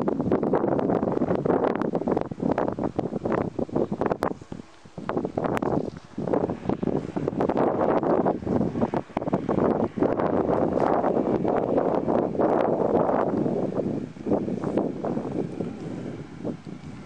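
Strong wind buffeting the microphone in uneven gusts, dropping off briefly about five seconds in and easing near the end.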